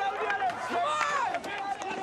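Several men shouting angrily over one another, with a loud, high yell about a second in.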